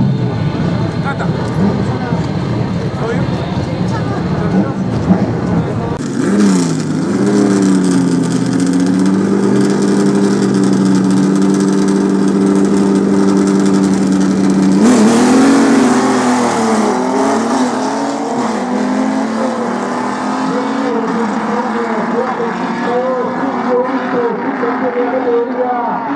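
Drag-racing car engines at the start line, one of them a Ford Falcon: held at a steady high pitch for several seconds, then revving up and down and running hard through the launch.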